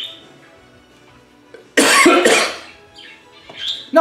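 A man coughs once, a sudden loud burst about halfway through a quiet pause in his talk.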